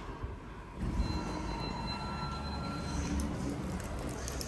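A click from the hall call button, then about a second in the elevator's doors slide open with a steady low rumble and a faint steady whine from the door operator.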